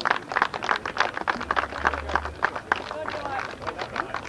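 Scattered applause from a small group of people, many sharp hand claps in quick irregular succession.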